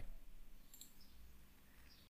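Faint computer mouse clicks: a couple about a second in and another near the end.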